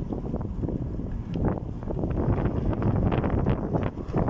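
Wind buffeting the microphone and road rumble from a moving car, a dense low rumble that gusts up and down unevenly.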